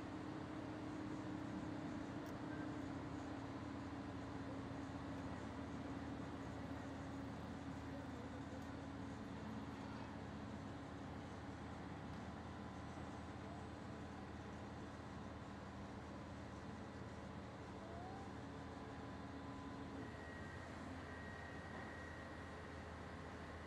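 Faint, steady low hum of a crawler crane's engine running as it lifts a load. The hum stops about twenty seconds in.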